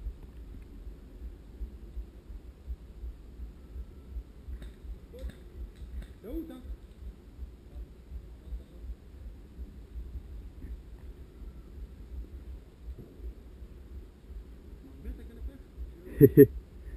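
Soft footsteps of someone walking along a woodland path, a dull thud at each step about twice a second, with light rustling of vegetation.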